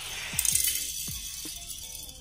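Two die-cast toy cars rattling as they roll fast along a plastic toy-car track and run off its end, the noise loudest about half a second in and fading over the next second.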